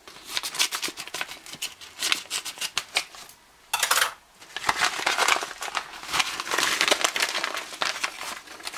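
Scissors cutting open a paper mailing envelope, with crackling paper and short snips through the first three seconds. A sharp rustle comes just before four seconds in, then steady crinkling of the envelope and its wrapping as it is opened by hand.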